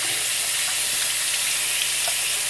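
Tap water running steadily, a continuous hiss, as a soapy paintbrush is rinsed under it.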